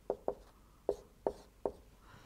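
Whiteboard marker writing on a whiteboard: a series of short, sharp taps and strokes, about five in two seconds, as figures are written.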